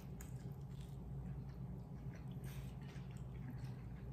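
Two people chewing mouthfuls of barbacoa tacos: faint, irregular wet chewing and small clicks over a steady low hum.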